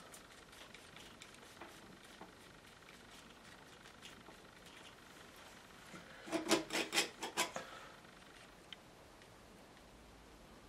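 A palette knife scraping oil paint, a quick run of about six short strokes a little past the middle; otherwise faint.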